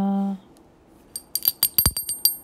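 A held chanted note ends just after the start. From about a second in comes a quick run of about eight to ten light metallic clinks, each with the same high ringing tone.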